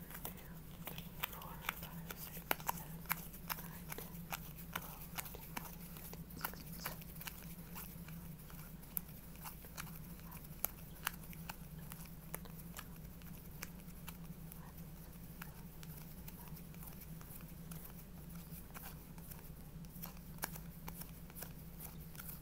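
Soft clicks and ticks of a mini deck of playing cards being thumbed through and counted, many at first and thinning out in the second half, over a low steady hum.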